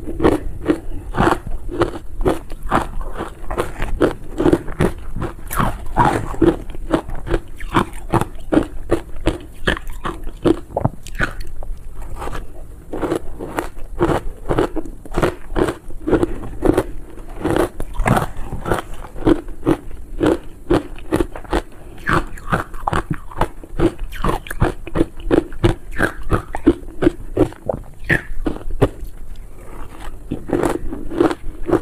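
Crushed ice coated in matcha and milk powder being bitten and chewed close to a lavalier microphone: a continuous run of crunches, several a second.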